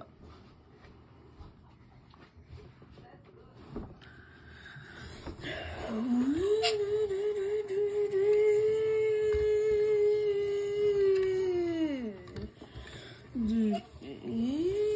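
A child making a car-engine noise with his voice for a toy car: a long hummed note that rises in pitch, holds steady for about six seconds, then drops away, with a second short rise near the end.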